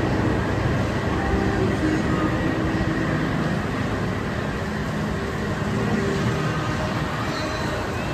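Steady low rumbling background noise with a few faint tones and no distinct events.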